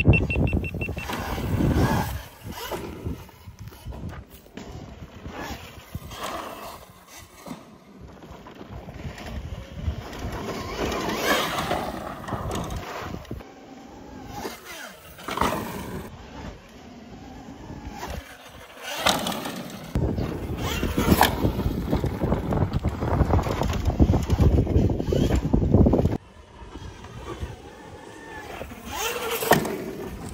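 Altis Sigma electric dirt bikes riding on a dirt jump track: rushing wind on a moving camera's microphone and tyres on dirt, with the bike's electric drive whining briefly as it rises and falls. The sound swells and fades with the riding, loudest for several seconds about two-thirds of the way through, then cuts off suddenly.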